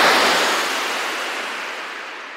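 A rushing white-noise sweep effect fading steadily away, closing a radio show's outro jingle.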